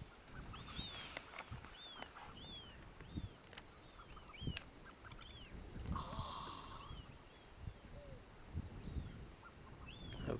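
A bird calling over and over in faint short, arched, high chirps, about one a second, with a few soft low thumps in between.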